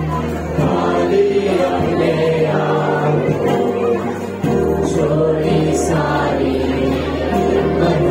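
Christian worship song: several voices singing together over instrumental accompaniment, with sustained low bass notes that change every few seconds.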